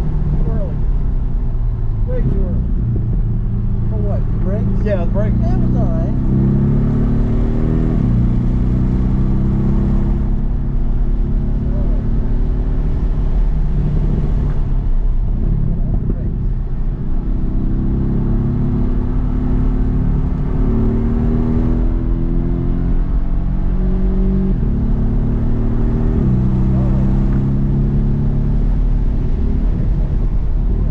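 Porsche 718 GTS engine heard from inside the cabin, accelerating hard through the gears: its pitch climbs and drops back at each upshift. It eases off for a corner around halfway, then climbs through the gears again, over steady road noise.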